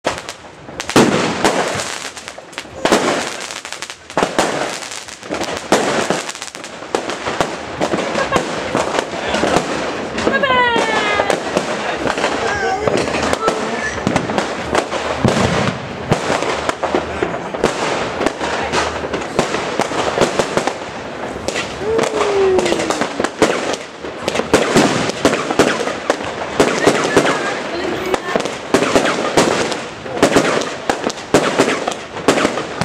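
Fireworks and firecrackers going off in a dense, near-continuous barrage of bangs and crackles.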